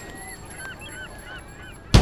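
Several birds calling in short, overlapping calls, each a quick rise and fall in pitch. Loud drum-kit music cuts in suddenly right at the end.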